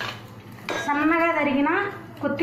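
A metal spoon clinks against a steel pot at the start, then a woman speaks for about a second.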